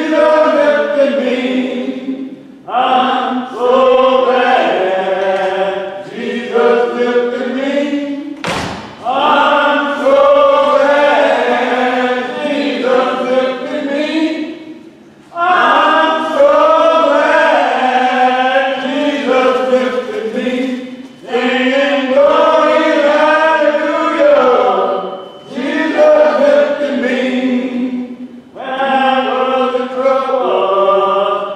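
Unaccompanied voices singing a hymn together in long drawn-out phrases, each phrase broken by a short pause. There is a single thump about nine seconds in.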